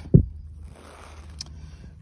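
Handling sounds of a plastic cord grip on a thin bungee cord: a short low thump just after the start, then faint rustling and a small click about midway as the grip is let go.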